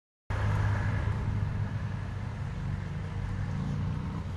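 A car driving past on the road alongside: a steady engine and tyre rumble that is loudest in the first second and then slowly fades as it goes by.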